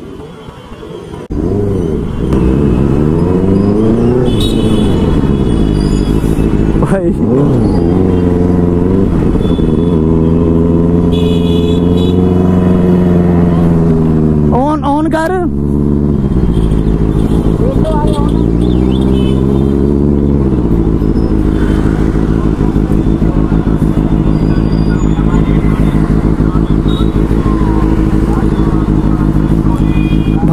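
Benelli 600i inline-four motorcycle engine with a loud exhaust, revved again and again so its pitch rises and falls, with a sharp high rev blip about halfway through. It runs more steadily for the last third.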